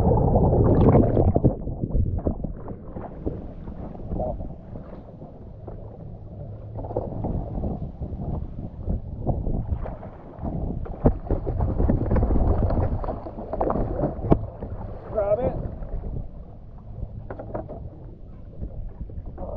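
Wind and water noise at the side of a small boat as a hooked yellowfin tuna thrashes at the surface, with scattered knocks against the boat.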